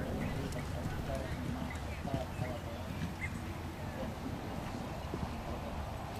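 Hoofbeats of a horse cantering on a sand arena, heard over faint background voices and a steady low rumble.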